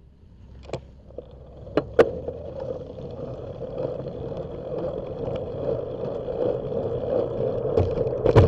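Wind rushing over a bike-mounted camera's microphone, building steadily as the bicycle pulls away from a stop and gathers speed. A few sharp clicks come in the first two seconds.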